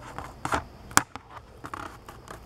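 Plastic-and-cardboard blister pack of a toy car being handled: scattered crinkles and light clicks, with one sharper click about a second in.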